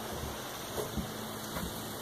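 Low, steady outdoor hiss with a few faint soft knocks around the middle.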